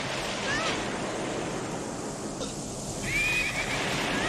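Storm wind rushing steadily in a film soundtrack, with a horse whinnying briefly about three seconds in.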